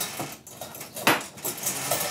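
Metal cutlery clinking: a few light clicks and one sharper clink about a second in, as a spoon is picked out.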